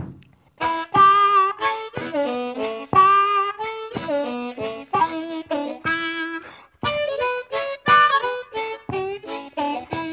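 Blues harmonica solo of short phrases with held and bent notes and brief gaps between them, starting about half a second in.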